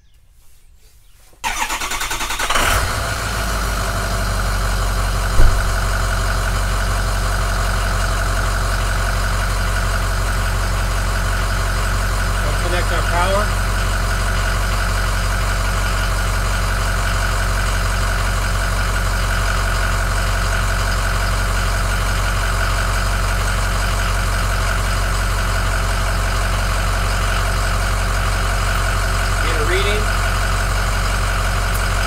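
Ford F-350 pickup's engine starting about a second and a half in, then idling steadily. A single sharp knock a few seconds after the start is the loudest sound.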